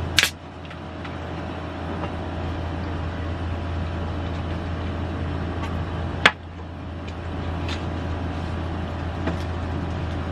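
A plastic Coca-Cola bottle twisted open with a short hiss of escaping gas, then a single sharp knock about six seconds later as a glass jar is set down on the table, over a steady low background hum.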